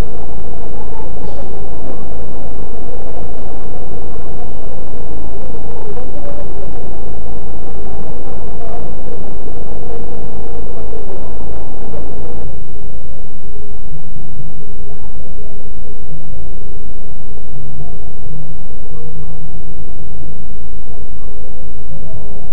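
Steady, loud rumble of a parked bus's idling engine as picked up by the bus's own CCTV microphone, with faint voices mixed in. About twelve seconds in the sound changes abruptly to a lower, duller hum.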